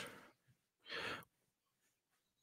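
A man's single short breath into a close microphone about a second in; otherwise near silence.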